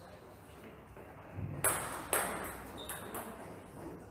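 Table tennis ball bouncing between points. There are two sharp ticks about half a second apart near the middle, followed by a few fainter ones, and a soft dull thud just before them.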